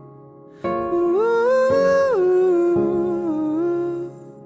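A nightcore (sped-up, pitched-up) pop song: a wordless sung 'oh' vocal line over soft backing, entering about half a second in. It glides up in pitch, holds, then falls back and stays steady before stopping near the end.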